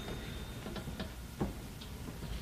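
A few faint, scattered ticks and clicks over the hiss of an old recording. The last of a ringing tone dies away at the start.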